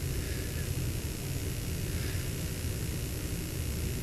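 Steady room noise: a constant low rumble with an even hiss over it, with no distinct events.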